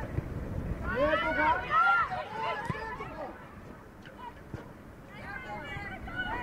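Players' voices calling out across a football pitch, two stretches of shouting about a second in and again near the end, over a low outdoor rumble.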